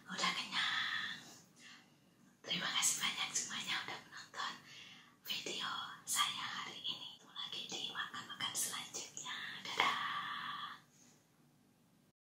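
A woman whispering close to the microphone in several phrases, with a short pause about two seconds in, falling silent about a second before the end.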